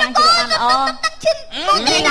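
A person speaking in a high voice, the pitch swooping sharply up and down, with a short break a little past one second.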